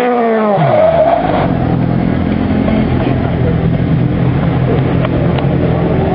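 Engine of a modified, wide-bodied classic Mini dropping in pitch over about the first second as the car comes off the throttle and passes close by, then running steadily.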